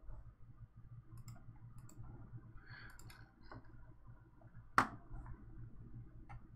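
Computer mouse and keyboard clicks, scattered and light, with one sharper, louder click about five seconds in, over a steady low hum.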